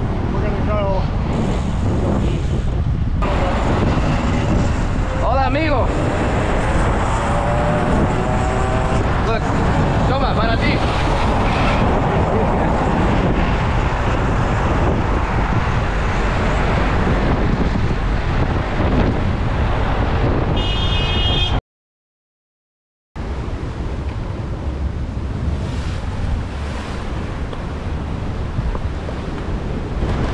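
Wind on the microphone and road traffic while a bicycle rides along a busy road, with a few short pitched sounds over the rush. About two-thirds through the sound drops out for a second and a half, then wind and surf breaking against rocky sea cliffs.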